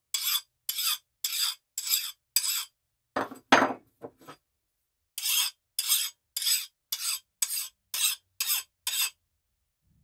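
Steel file drawn in quick, even strokes across the edge of a quench-hardened high-carbon steel horseshoe blade, about two strokes a second, in two runs with a pause between. The file skates over the metal instead of biting in, which he takes as the sign that the steel hardened. A brief, louder and lower sound comes just past three seconds in.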